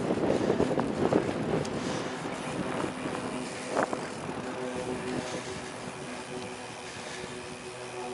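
Bicycle rolling along a paved path, with wind buffeting the camera microphone that eases after the first couple of seconds. There is a single knock a little before halfway, and a faint steady hum comes in during the second half.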